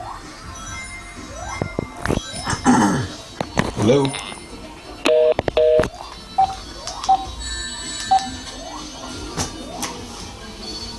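Two short electronic beeps on a telephone line, each two steady notes sounding together, a little over five seconds in, while the line is otherwise silent. Faint background music with scattered short chirps runs under it, and a voice asks 'Hello?' just before the beeps.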